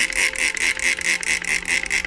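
Plastic trigger spray bottle pumped rapidly, each squeeze a short hiss of mist, about four or five sprays a second, wetting the moss on a bonsai's root ball.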